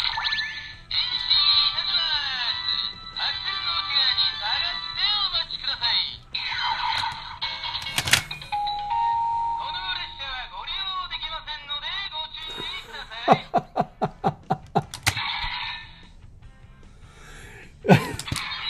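An electronic ToQger toy plays its recorded sequence through a small, tinny speaker after a Den-O Ressha toy train is loaded. It sounds Den-Liner-themed music and voice with warbling sound effects, a short steady beep about halfway through, and a rapid run of sharp hits about three-quarters of the way in.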